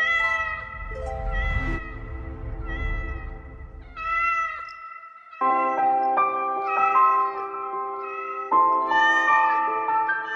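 Cat meows repeated about once a second over background music with sustained notes.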